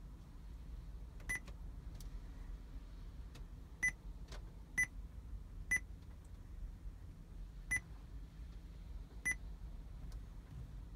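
Touch-confirmation beeps from a Joying Android car head unit: five short, identical high beeps, one for each tap on the touchscreen, coming about a second or two apart from about four seconds in. A couple of faint clicks come before them.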